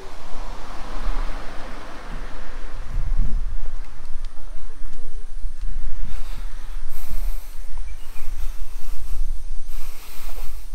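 Wind rumbling on the microphone of a handheld camera carried on a walk, with hiss, rustling and handling noise, busier near the end.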